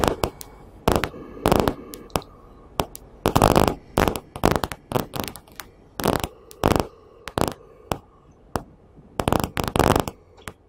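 Irregular bursts of rustling and crackling noise close to the microphone, one or two a second, some brief and some lasting about half a second.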